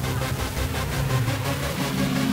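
Electronic background music with a steady beat and sustained low notes.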